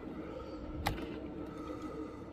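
Steady low room hum with a single light click a little under a second in, from a small die-cast toy car being handled.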